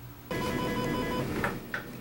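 An electronic telephone ring: a steady tone that starts suddenly and stops about a second later, followed by two short clicks as the call is picked up.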